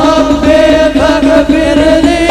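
A group of men chanting sholawat in unison on long held notes that step in pitch, over a steady beat from hadroh frame drums.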